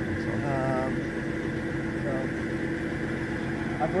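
Tractor engine idling steadily, a constant hum with a steady drone.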